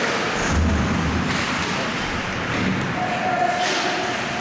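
Ice hockey play in an indoor rink: skates and sticks on the ice, with a low, heavy thud about half a second in, as of a body or puck hitting the boards.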